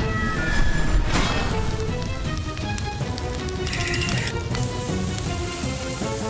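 Cartoon background music over the hiss of a fire hose spraying water, with a couple of brief whooshing effects.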